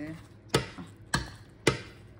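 Metal ladle knocking against a stainless steel cooking pot three times, about half a second apart, while broth is spooned over the food.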